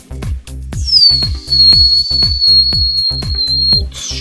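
Electronic dance music with a steady kick drum about two beats a second, over which a high whistle-like tone slides down and then holds level for about three seconds before cutting off near the end.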